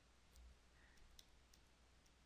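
Near silence: a few faint clicks of a stylus writing on a tablet, over a low hum.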